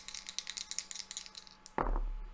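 Dice rattling and tumbling into a felt-lined dice tray: a quick, irregular run of light clicks, then a dull thump near the end.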